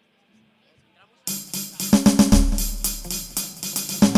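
A rock band playing live starts abruptly about a second in with a run of quick drum-kit hits. A deep, held low note joins beneath the drums a second later.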